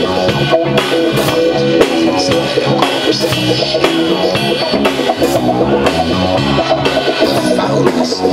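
Live rock band playing loudly: a drum kit with cymbals keeping a steady beat under guitar.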